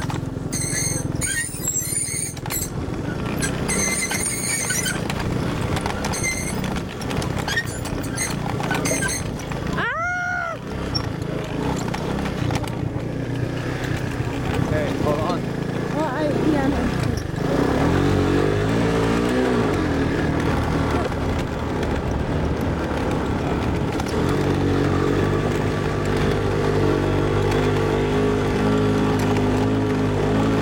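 Honda ATC three-wheeler engine running while riding over rough ground, its note rising and falling with the throttle in the second half and then holding a steadier, higher pitch. A brief high rising-and-falling sound about ten seconds in.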